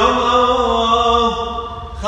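A solo voice chanting a Syriac liturgical hymn, holding long sustained notes that slide down to a lower pitch about two-thirds of the way through, the phrase tapering off near the end.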